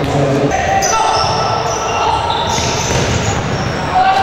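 Live sound of a futsal match in an indoor sports hall: players shouting, and shoes squeaking on the wooden court in short high squeals. The sound changes abruptly about half a second in.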